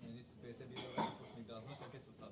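Dishes and cutlery clinking in the background, with one sharp clink that rings briefly about a second in, under faint murmured voices.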